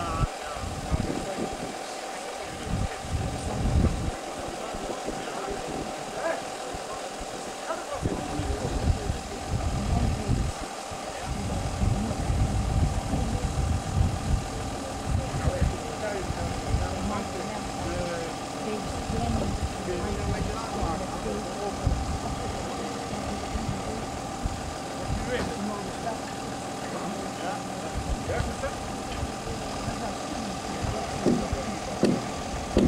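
A mobile crane's engine running steadily, with a constant hum.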